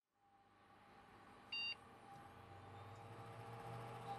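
Silence, then a faint steady electronic hum fades in and grows slowly louder. About one and a half seconds in, one short, high electronic beep sounds, the loudest thing here.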